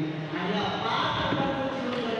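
A man's voice speaking through a microphone and loudspeakers, with a noisier, rougher stretch near the middle.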